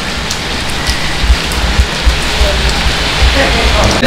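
A steady, even hiss of outdoor noise with an uneven low rumble beneath it. Faint voices sound in the background, and the hiss cuts off suddenly at the end.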